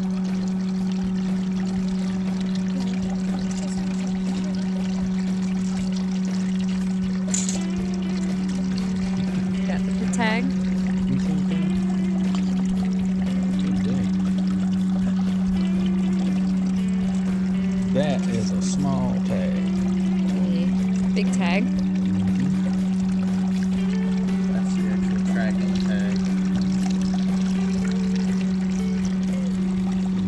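Small water pump humming steadily while water pours and trickles.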